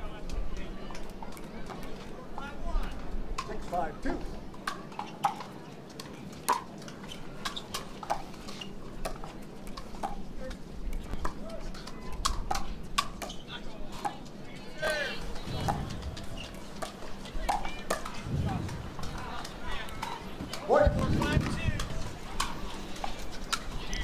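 Pickleball paddles hitting the hard plastic ball in rallies: sharp, irregular pops scattered throughout, over a murmur of crowd and player voices between points.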